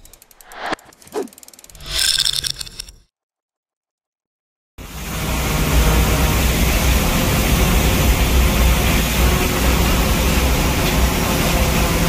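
A brief intro of whooshing sound effects, then silence, then from about five seconds in a steady, loud rush of hurricane-force wind buffeting the microphone, mixed with storm surf.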